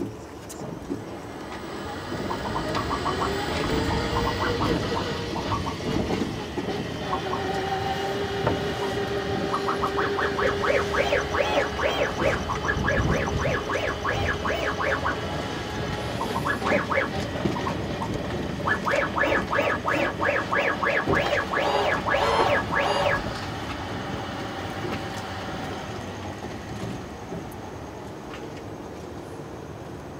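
Electric self-driving shuttle under way: a motor whine that climbs in pitch a few seconds in and then holds steady, with two spells of rapid, rattling ticks, about ten and about twenty seconds in.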